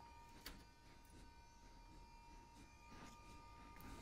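Near silence: faint room tone with a thin steady tone and a single faint click about half a second in.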